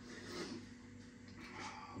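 Quiet room tone in a small room, with a faint steady low hum and a couple of soft faint rustles.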